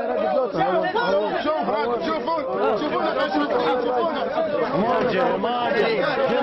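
Many voices speaking over one another at once, a dense babble of overlapping words in which none stands out clearly.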